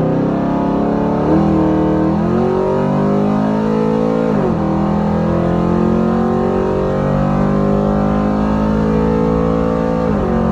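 Car engine under full acceleration on a drag-strip pass, heard from inside the cabin: its pitch climbs, drops sharply about four and a half seconds in as the transmission shifts up, then climbs steadily again.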